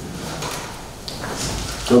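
Sheets of paper being handled on a meeting table, a few soft rustles and light knocks against low room noise. A man's voice starts loudly near the end.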